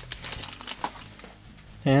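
Light scattered clicks and rustles of plastic model-kit parts being handled, with a faint steady hum under them.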